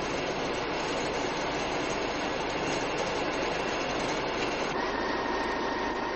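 Steady rushing noise with no distinct events; a faint steady tone joins near the end.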